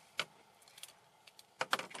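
A few sharp, small clicks and light rattles: one click just after the start, faint ticks in the middle and a quick cluster near the end, from a pen and a sheet of paper being handled.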